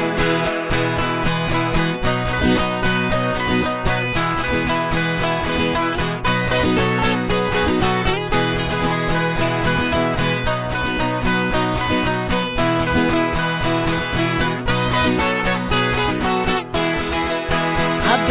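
Two Brazilian violas caipiras (ten-string guitars) playing an instrumental passage between sung verses of a sertanejo raiz song, plucked and strummed in a steady, lively rhythm.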